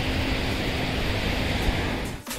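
Steady, even rushing noise of sea surf washing up the shore.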